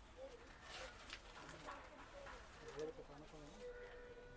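Faint, indistinct voices in the background, with a few soft clicks.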